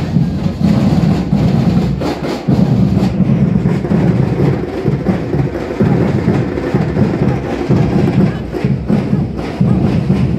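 Batucada-style drum group playing a loud, steady rhythm on deep drums, with a brief dip about two and a half seconds in.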